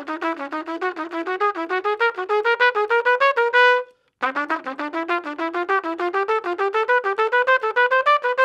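Trumpet playing two fast ascending scale runs of quick, even notes, each climbing about an octave and ending on a held top note. The second run starts a little higher than the first: the same altered major-scale exercise moved up into the next key.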